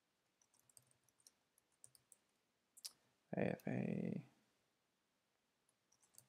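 Faint, scattered clicks of computer keyboard keys being pressed, a few per second, over the first few seconds.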